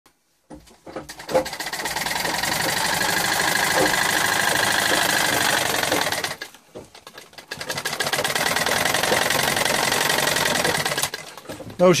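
Sewing machine stitching cloth at a fast, even rate, in two runs: about five seconds, a pause of about a second, then about three and a half seconds more.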